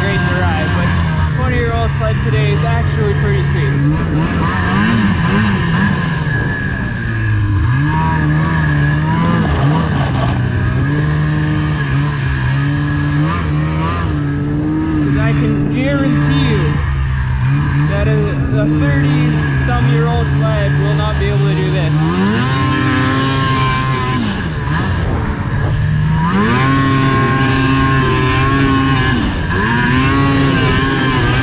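2005 snowmobile engine running hard under changing throttle while being ridden, its pitch rising and falling again and again, with a big rev-up, a dip and a climb back again late on.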